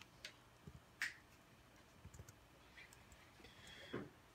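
Faint, scattered keystrokes on a computer keyboard as a short word is typed: a handful of soft clicks, the loudest about a second in.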